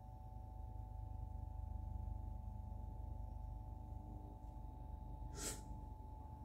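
A quick slurp of brewed coffee from a cupping spoon, sucked in with air, once about five and a half seconds in, over a faint steady room hum.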